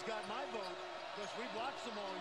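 Faint sound from a televised basketball game played low under the call: a ball bouncing on the court with muffled voices.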